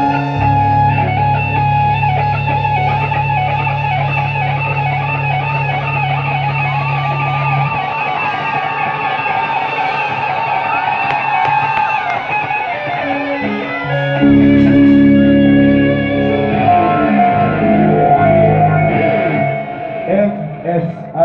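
Rock band playing live: an electric guitar lead with wavering vibrato and bent notes over long sustained bass notes. The low notes drop out about eight seconds in and come back louder around fourteen seconds.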